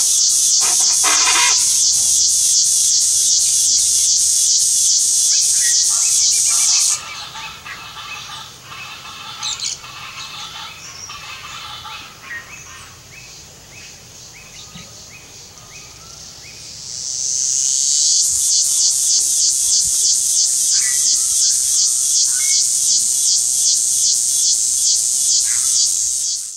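Loud, high-pitched insect buzz pulsing several times a second, cutting off abruptly about seven seconds in. Quieter short bird calls follow. The buzz swells back in, rising, around seventeen seconds and carries on.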